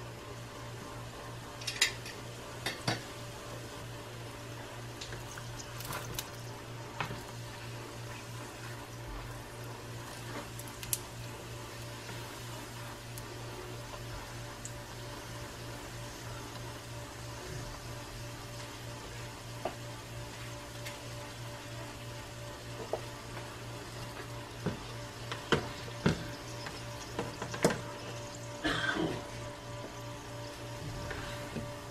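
Burritos frying in hot oil in a nonstick skillet: a steady, fairly quiet sizzle. Occasional sharp knocks and scrapes of a spatula and hands turning the burritos come through it, bunched near the end.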